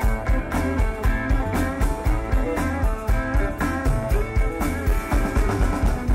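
Rock band playing live through an instrumental passage, with guitars over a drum kit keeping a steady beat.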